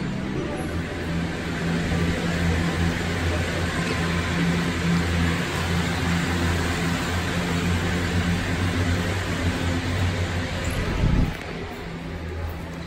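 Cable car machinery running in its station: a steady low hum and rumble that drops away sharply about eleven seconds in.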